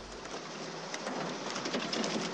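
A steady, rain-like hiss with faint scattered ticks.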